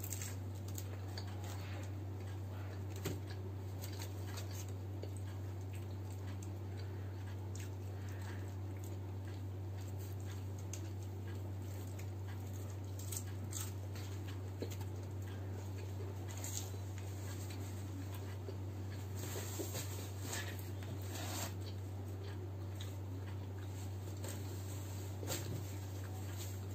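Close-miked chewing and mouth sounds of pizza being eaten, with scattered small clicks and crackles over a steady low hum.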